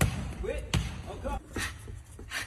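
Gloved strikes smacking into boxing focus mitts: two sharp hits, one at the start and one under a second later, with lighter knocks between, over voices.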